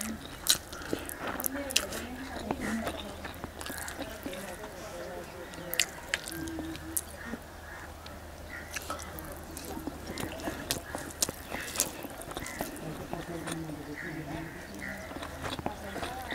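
Close-miked eating sounds of rice and chicken eaten by hand: chewing and lip smacking, with many sharp wet mouth clicks. Faint voices sound in the background.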